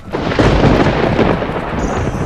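A thunder-like rumbling sound effect: a dense roar with a deep low end that starts suddenly and holds fairly steady.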